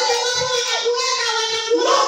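A woman's high voice singing through a microphone and loudspeakers, holding long notes.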